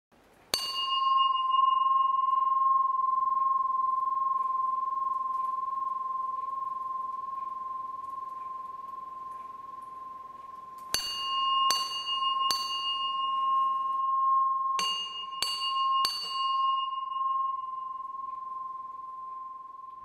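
A bell struck once and left ringing in one clear, slowly fading tone for about ten seconds, then struck three times in quick succession, and three more times a few seconds later, each strike ringing on.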